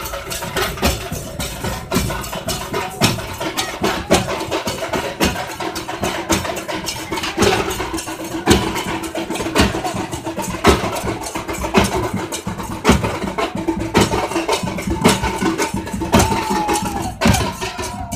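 Several large dhol drums beaten hard and fast in a dense, unbroken drumming rhythm, with a faint steady tone underneath.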